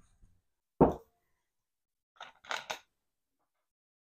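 Supplies being handled and set down on a metal-topped table: one sharp knock about a second in, then a brief cluster of clicks and rustling a little after halfway.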